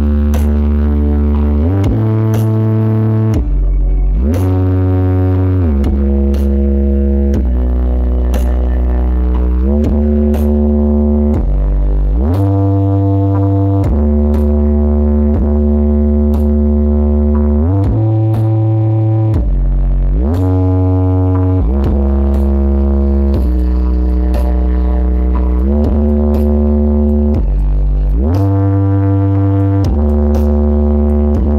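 Loud electronic music from a parade sound-system truck's speaker stacks. Deep held bass notes slide from one pitch to the next every couple of seconds, with occasional sharp hits over them.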